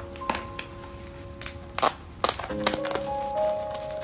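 Plastic bubble wrap crackling and crinkling as it is handled and pressed around a parcel, with a run of sharp cracks, the loudest just under two seconds in. Background music with held notes plays underneath.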